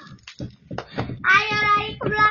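A young girl's high, drawn-out wordless vocal sound in the second half, after a few soft knocks in the first second.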